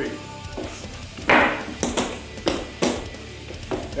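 A quick run of hand strikes on a wall-mounted wooden striking rig, about half a dozen sharp impacts starting about a second in, the first the loudest, with faint music underneath.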